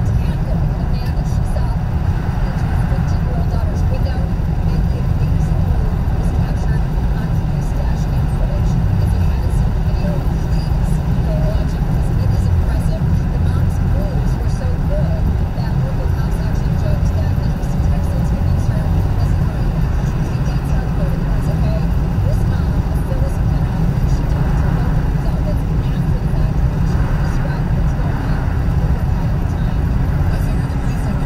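Steady low rumble of road and tyre noise inside a car cabin cruising at freeway speed.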